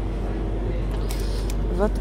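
Steady low hum and background noise of a supermarket's chilled display area, with a few faint rustles of plastic packaging about a second in.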